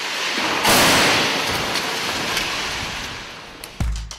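A rush of noise that swells and breaks into a loud crash-like burst less than a second in, then fades slowly over a few seconds, fitting a crash-test vehicle striking a barrier. Drum-led music starts near the end.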